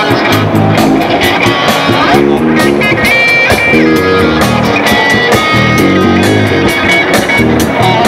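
Electric guitar played loud: a rock lead with runs of low notes and held high notes.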